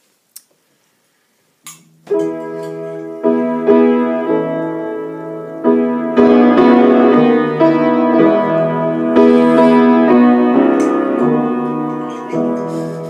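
Slow, sustained piano chords begin about two seconds in, after a couple of faint clicks, as the instrumental opening of a hymn. The chords change every second or two.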